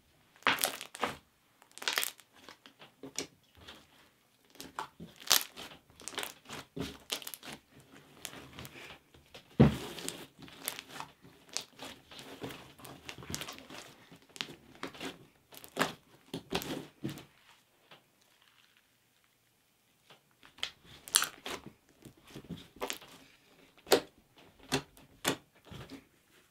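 Silver glitter slime being squished and kneaded by hand against a table, giving a run of irregular crackles and squishes. The sounds pause briefly about two-thirds of the way through.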